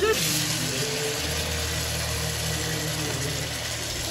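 Marinated chicken pieces tipped from a steel bowl into a hot pan of onion-tomato masala, setting off a steady sizzle that starts suddenly as the meat goes in. A steady low hum runs underneath.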